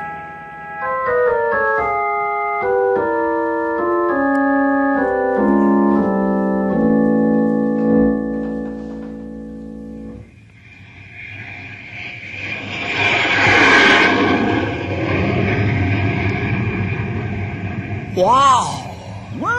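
A radio-drama organ bridge: a run of chords stepping downward, ending on a low held chord. About ten seconds in it gives way to a rushing sound effect, like a jet passing overhead, which swells up and eases off.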